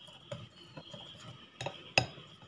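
Metal wire whisk stirring thick semolina batter in a glass bowl: soft scraping and small clinks of the wire against the glass, with one sharp clink near the end, the loudest sound.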